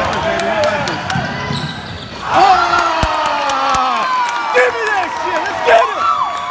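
Basketball being dribbled on a hardwood gym floor, with sharp bounces and thumps, under the voices of spectators. One long drawn-out shout begins about two seconds in.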